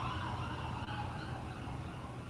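Emergency vehicle siren dying away: its falling wail fades to a faint tone over a low hum.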